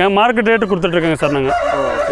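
A rooster crowing over a man's voice.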